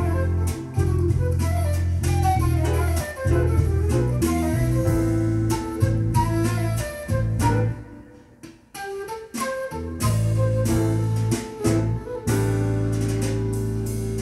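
Accusound M6 bookshelf speakers playing an instrumental passage of a jazz-pop recording, with a bass line under a melodic lead and guitar. The music thins out briefly about eight seconds in, then picks up again.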